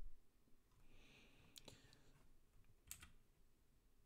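Near silence with a few faint computer clicks from mouse and keys, the two clearest about one and a half and three seconds in.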